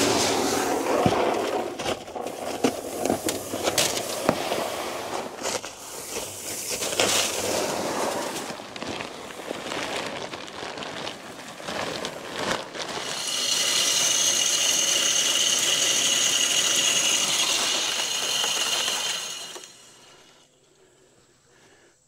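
Whole shelled corn poured from sacks, rattling into a metal deer feeder. A little past the middle, the feeder's motorized spinner runs for about six seconds with a steady whine, flinging corn out: the feeding signal that wildlife learn as a dinner bell.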